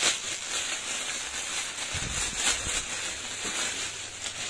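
Clear plastic packaging bag crinkling and rustling steadily as it is handled and a jacket is pulled out of it.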